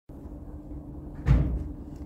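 A door closing with a thud a little past halfway, over a low steady hum.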